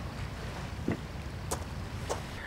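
Quiet steady outdoor night ambience by a lake: a low rumble of wind and water, with a faint tick about a second in and a sharper click about a second and a half in.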